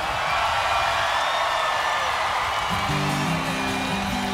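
Concert crowd cheering and whooping. About three-quarters of the way through, a sustained chord comes in on a 12-string acoustic guitar and rings on.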